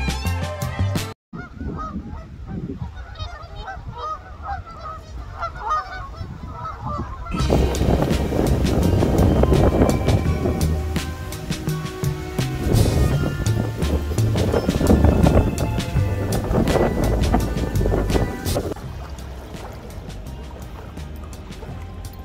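Geese honking repeatedly for several seconds after a sudden cut, then loud wind noise on the microphone beside choppy water, easing near the end.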